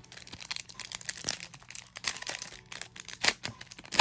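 A trading-card booster pack's wrapper crinkling and tearing as it is ripped open by hand, in quick sharp crackles that are loudest about a second in and near the end.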